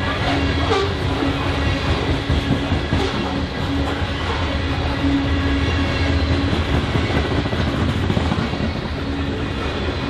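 BNSF covered hopper cars of a grain train rolling past, a steady rumble of steel wheels on rail with a humming tone that comes and goes.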